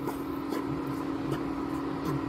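Steady electric hum of an induction cooktop heating a kadhai, with faint scraping and a couple of light taps from a spatula stirring dry-roasting gram flour in the non-stick pan.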